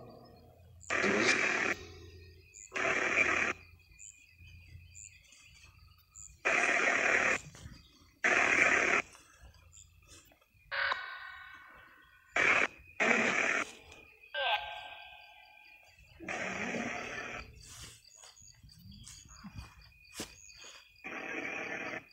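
Ghost-box (spirit box) app playing through a speaker: a string of short bursts of static-like noise, each about half a second to a second, switching on and off abruptly. A few brief garbled voice-like fragments come between the bursts.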